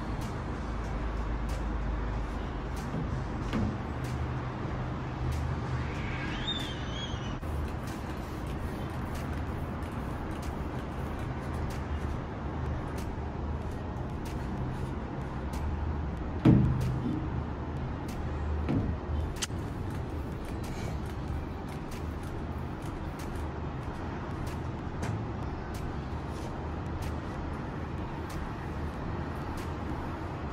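Steady low rumble of distant road traffic, with scattered faint clicks and taps. There is a brief squeak about six seconds in and one loud thump about sixteen seconds in.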